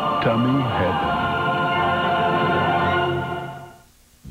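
Commercial jingle for Perkins Family Restaurant: a group of voices sings a few short notes, then holds a long final chord that fades out near the end.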